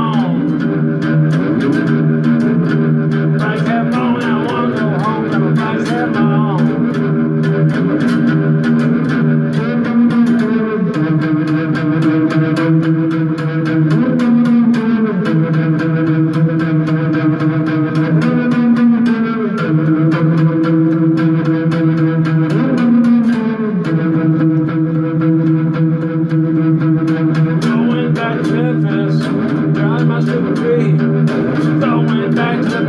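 Homemade one-string slide instrument (a diddley bow with a can body) played with a slide: held low notes, plucked in a repeating blues riff, gliding up and down between pitches every few seconds.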